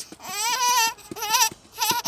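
A little girl's high-pitched squealing laughter: one long wavering note, then two short ones.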